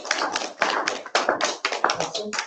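A small group of people applauding, with many quick overlapping hand claps.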